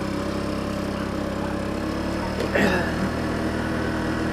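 A 150cc GY6 Chinese scooter's single-cylinder four-stroke engine running steadily as it is ridden.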